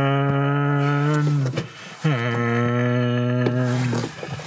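A man's voice holding two long, low, steady notes, like a hum or a drawn-out drone. The first note breaks off about a second and a half in, and the second starts about half a second later.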